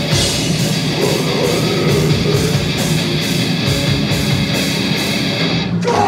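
A heavy metal band playing live and loud: electric guitars, bass and drums, with a steady beat of cymbal hits. The cymbals drop out briefly just before the end.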